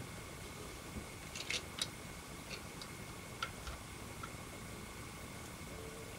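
Faint scattered clicks and light taps of plastic model-kit parts being handled, over quiet room tone with a faint steady high-pitched whine.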